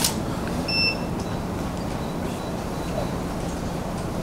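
Camera shutter click right at the start, then a short high electronic beep just under a second in, typical of a DSLR's autofocus-confirm beep, over a steady low room hum.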